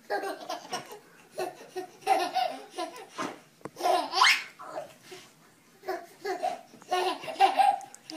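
Baby laughing in repeated bursts, with a high rising squeal about four seconds in.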